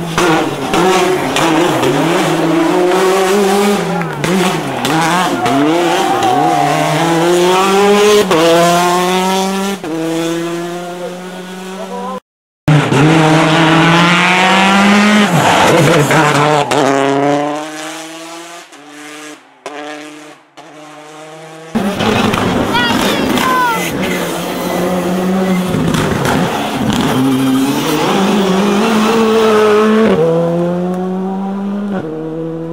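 Rally car engines revving hard, their pitch climbing and dropping through gear changes as one car after another drives past, with some tyre squeal. The sound cuts out abruptly a little before halfway, and goes quieter for a few seconds after the middle before the next car comes in.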